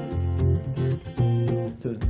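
Acoustic guitar strumming chords, each chord ringing before the next is struck, several times over.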